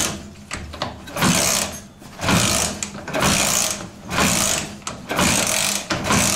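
Dnepr MT16 sidecar motorcycle's flat-twin engine being kick-started over and over, about one kick a second, each a short rush of cranking noise without the engine settling into a run. The owner thinks no fuel is reaching the newly fitted PZ30 carburetors.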